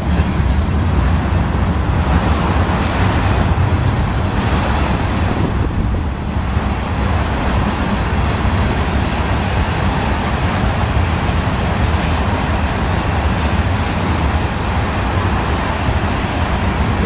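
Freight train's covered hopper and tank cars rolling past, a steady loud rumble of steel wheels on the rails.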